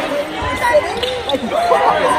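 Many voices of a gym crowd talking at once, with a basketball bouncing on the hardwood court a few times.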